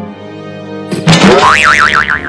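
Cartoon boing sound effect, loud, its pitch wobbling up and down, starting about a second in over background music.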